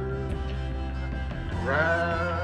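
A man singing a long held note with a slight waver over a recorded pop backing track with a steady bass line, then starting a new sung line near the end.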